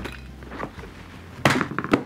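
Plastic compartment organiser box being shut: a sharp plastic clack about one and a half seconds in as the lid snaps closed, followed by a few quick clicks of its latches.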